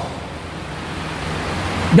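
A steady rushing noise close on a headset microphone, swelling slightly near the end.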